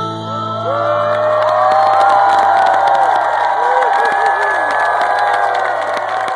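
A concert crowd cheering and whooping, swelling about a second in, over a single low note held by the band's instruments.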